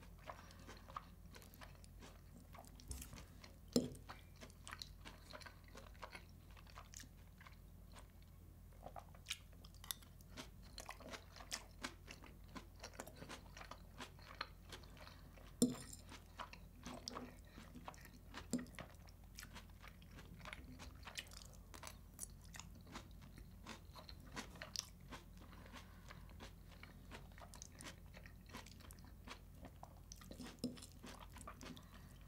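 Close-miked chewing of a crunchy pickled-vegetable salad with herring: a steady run of small crunches and wet mouth clicks. A few louder knocks stand out, about 4 seconds in and twice in the middle.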